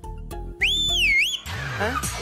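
A loud two-finger whistle, rising, dipping and rising again in pitch, sounded to hail an auto-rickshaw. A short hiss follows.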